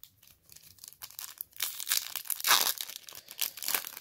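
A foil trading-card pack wrapper being torn open and crinkled by hand, a dense crackling that starts about a second in and keeps up to the end.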